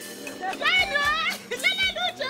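A high-pitched voice, its pitch gliding up and down, in two short bursts over background music.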